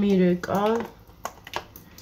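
A woman speaking briefly in Georgian, then a few faint, short clicks as something small is handled.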